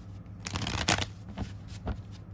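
Tarot cards being shuffled by hand: a rush of card noise for about half a second, then a few sharp clicks. A steady low hum runs underneath.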